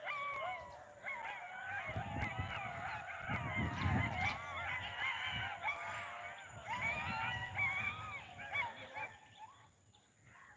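A flock of birds calling together: many overlapping short calls that rise and fall in pitch, thinning out near the end. A low rumble comes and goes about two to four seconds in.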